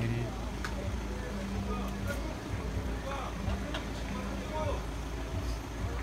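Street noise from stopped traffic: a steady low hum of idling car engines under the scattered voices of a crowd.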